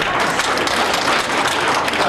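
An audience applauding, many hands clapping at a steady level.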